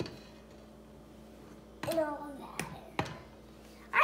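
Two light knocks of a mixing bowl as dry ingredients are tipped out of it into a stainless steel bowl, with a child's few words between.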